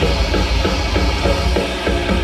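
Thrash metal band playing live: drum kit with pounding bass drum under bass guitar and distorted electric guitars, with no vocals.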